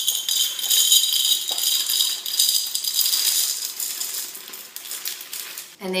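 Dry pasta poured from a plastic container into a tall drinking glass: a dense rattle of hard pieces clattering against the glass and each other, easing off toward the end.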